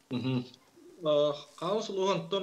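A man's voice speaking over a video-call link, in held, drawn-out syllables with pauses between them.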